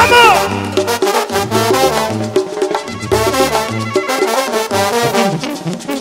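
Mexican brass band (banda) playing live: an instrumental brass passage over a pulsing low bass line, with a sliding note at the start.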